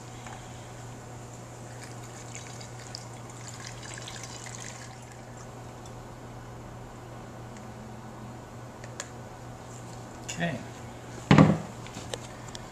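Potassium hydroxide solution poured from a glass bowl through a plastic funnel into the machine's tank, a faint running of liquid heard mostly over the first five seconds, above a steady low hum.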